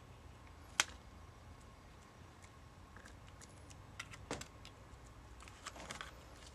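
Fingers pressing and handling a cardstock card as a glued paper zigzag strip is pressed down: a few faint, sharp clicks and taps, one just under a second in and two close together around four seconds in, over a low steady room hum.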